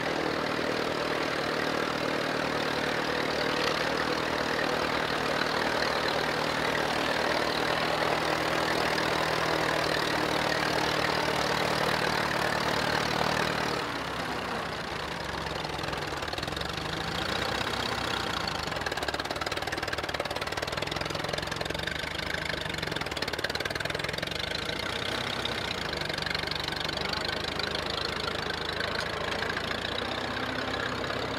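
Vintage steel-wheeled tractor's engine running steadily while it pulls a plough through a field. About fourteen seconds in the sound drops a little and changes, with the engine pitch wavering up and down.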